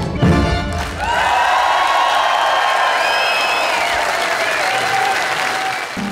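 A live band's last notes fade out. About a second in, a large outdoor concert crowd breaks into loud, steady applause, with cheers and whistles gliding over it.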